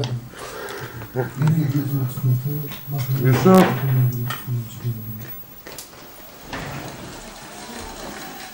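Indistinct talking in a small room for about the first five seconds, then quieter room noise with a few sharp clicks.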